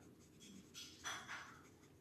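Stampin' Blends alcohol marker tip rubbing across a small cardstock leaf in a few faint, light colouring strokes around the middle.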